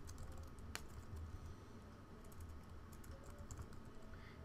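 Faint typing on a computer keyboard: a scattered run of individual key clicks.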